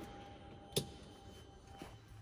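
A single sharp click from a switch on a Polaris RZR's dash about a third of the way in, over a faint steady electronic tone that stops shortly before the end.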